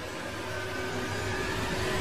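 A rushing, hiss-like noise sound effect, one long whoosh with a faint steady tone in it, slowly growing louder.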